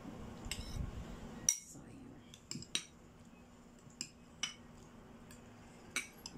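A metal spoon clinking and scraping against white ceramic bowls as salad is spooned in and mixed: a few scattered sharp clinks, the loudest about a second and a half in.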